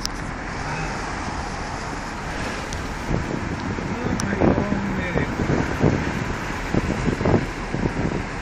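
Steady road noise of a moving vehicle, with faint indistinct voices in the second half.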